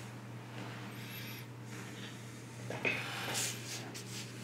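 Quiet room tone with a steady low hum. Near the end comes a short sharp sound, followed by a brief breath-like hiss.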